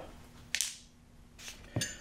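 A single sharp metallic clink about half a second in, from the steel shock spanner wrench being handled, with a softer click near the end over a faint steady hum.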